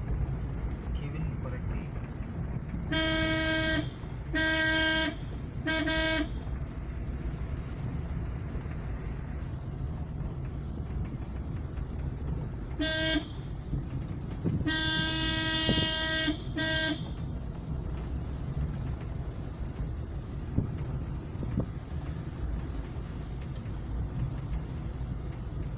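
Car horn sounding at one steady pitch: three short honks, then about seven seconds later a short toot, a long blast of about two seconds and a final short toot. Underneath is the steady rumble of the car's engine and tyres, heard from inside the cabin.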